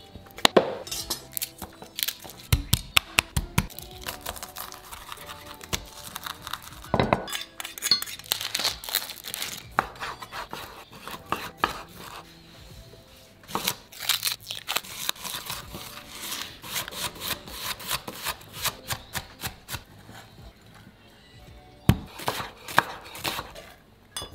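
Chef's knife chopping on a wooden cutting board, quick runs of sharp strikes as chorizo and onion are cut, with music playing underneath.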